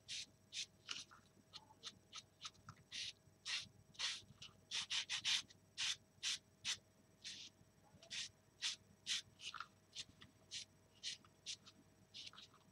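Stiff paintbrush stroking Mod Podge around the edges of a small wooden box: a run of short, brushy swishes, roughly two a second, over a faint steady hum.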